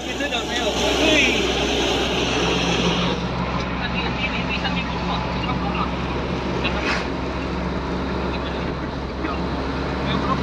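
Isuzu NPR Turbo diesel truck driving along a road, heard from inside the cab: a steady engine hum with road noise.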